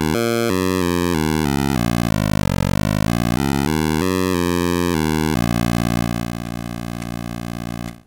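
Synthesizer tone from Bitwig's Parseq-8 step modulator running at audio rate through a DC Offset device, its pitch jumping to a new note several times a second as keys are played on a MIDI keyboard. About five seconds in it settles on one held note, a little quieter, which cuts off near the end.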